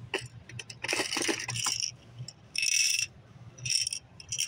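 Small hard plastic cube toy packages clicking and rattling against each other as a hand sorts through them in a store bin, in about three bursts.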